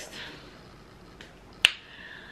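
A single sharp plastic click about one and a half seconds in, from a small toiletry container's cap being snapped as it is handled.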